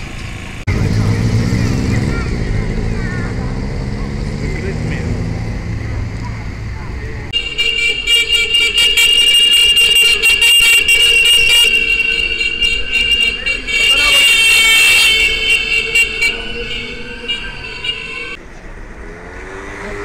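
Horns of a column of small electric scooters tooting over and over, high-pitched and insistent, for about ten seconds, starting about seven seconds in. Before that there is a lower street-traffic rumble.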